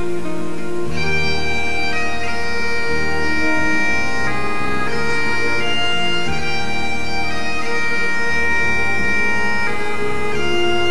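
Bagpipe music: a steady drone under a melody of held notes that comes in about a second in.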